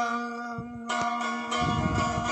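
Long-necked plucked lute between sung lines: a few single plucked notes ring out over a held low tone, then rapid, steady strumming starts about one and a half seconds in.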